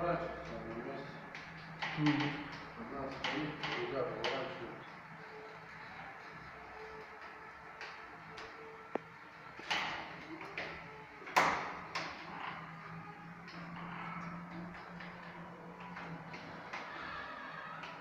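Electric drive motors of a Caterwil GTS3 tracked stair-climbing wheelchair running with a steady low hum as it pivots and creeps across a stairwell landing, with a few sharp knocks about two-thirds of the way through. Quiet, unclear talk is heard in the first few seconds.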